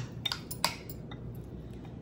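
A metal spoon clinking a few times against dishes as deviled-egg filling is scooped and spooned into halved egg whites. The sharpest clink comes a little over half a second in, followed by fainter taps.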